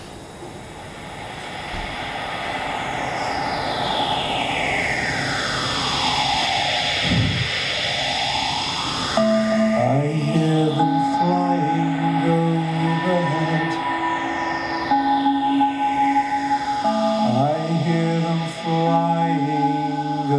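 Electronic backing track of samples fired from a Pad 5 sequencer unit, with echo on them. It opens with a swelling whooshing sweep whose pitch glides cross over each other for about nine seconds, then held synth notes and a bass line come in.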